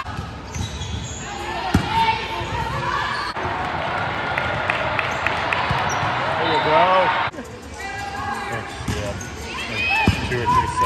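Indoor volleyball play in a large, echoing hall: players and spectators calling out over the rally, with sharp ball contacts, one clear smack about two seconds in. The sound shifts abruptly twice as the footage cuts to rallies in other gyms.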